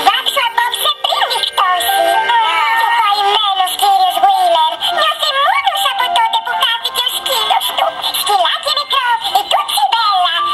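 A cartoon song from a TV broadcast: high-pitched, sped-up chipmunk-style voices singing over music without a break.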